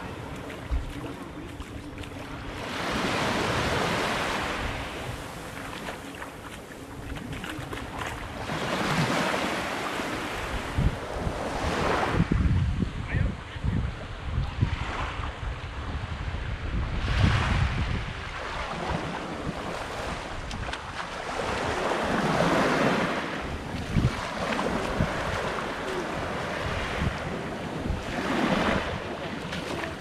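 Small waves washing up onto a sandy beach, swelling and receding every few seconds. Wind buffets the microphone with a low rumble.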